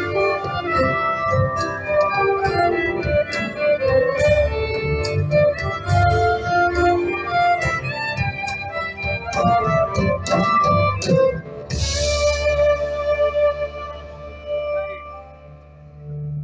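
Live folk-rock band playing, a violin melody over acoustic guitars, keyboard and drums with regular drum hits. About twelve seconds in the song ends on a cymbal crash and a held chord that fades away.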